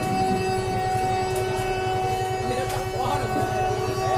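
A TV football commentator's long drawn-out "goool" call for a decisive penalty, held on one steady pitch for about four seconds.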